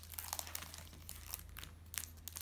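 Thin plastic clear files crinkling and crackling as they are handled and laid down, a quick run of short rustles.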